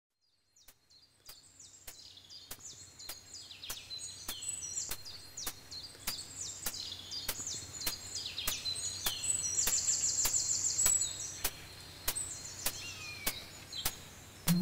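Woodland birdsong fading in: several birds give repeated falling whistles, with a fast high trill about ten seconds in. Under it runs a steady sharp click about every 0.6 seconds.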